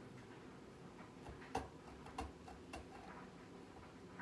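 Small serrated pumpkin-carving saw working into a raw turnip: faint, irregular clicks and scrapes, the sharpest about one and a half seconds in.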